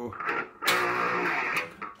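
Electric guitar picked as part of a riff demonstration: a short note just after the start, then a note or chord struck about two-thirds of a second in that rings for about a second before fading.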